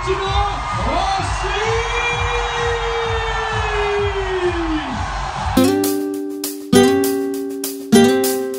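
Crowd noise with a long drawn-out voice call that rises and falls, then, about five and a half seconds in, an acoustic guitar starts: chords strummed about once a second, each ringing and fading.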